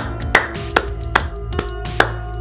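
Marching music with a sharp, even beat about two and a half strikes a second over low held notes.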